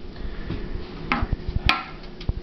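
Handling knocks, then a single sharp metallic clink near the end, as a round metal pan of cornmeal is set on a cloth-covered table.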